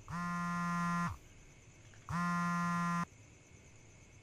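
Mobile phone buzzing for an incoming call: two buzzes of about a second each, a second apart.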